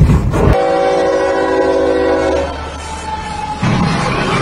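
A loud rushing noise cuts off about half a second in. A diesel locomotive's multi-tone air horn then sounds a chord, held for about two seconds before fading to a weaker tone, as the train nears a level crossing. Just before the end a sudden loud noisy burst comes as the locomotive meets the semi truck on the crossing.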